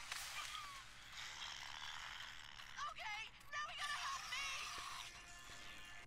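Animated episode soundtrack playing quietly: a steady rushing hiss with several short, high, wavering cries about halfway through.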